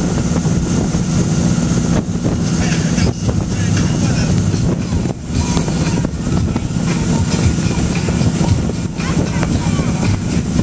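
Motorboat engine running steadily at towing speed, heard from on board, with wind buffeting the microphone and water rushing past.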